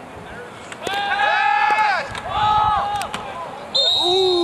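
Voices yelling on a football field as a play is run: two long, loud yells, each rising and falling in pitch, about a second in and again near the middle. A steady high-pitched tone starts just before the end.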